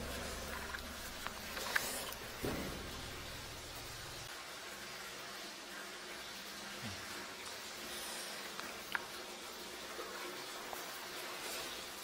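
Faint steady hiss with a low hum that stops about four seconds in, and a few light clicks and taps.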